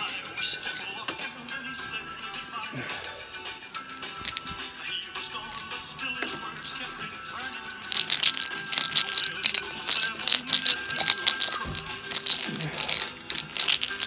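Background music with singing. From about eight seconds in it is joined by a rapid run of metallic clicking and rattling from a screwdriver turning a screw out of a door lock's faceplate.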